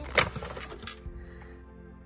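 The plastic lid of a food processor being unlocked and lifted off the bowl: a sharp plastic click, then a few lighter clicks and rattles within the first second.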